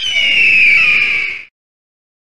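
A single loud, harsh bird-of-prey screech, an eagle-cry sound effect, about a second and a half long. Its pitch falls slightly before it cuts off suddenly.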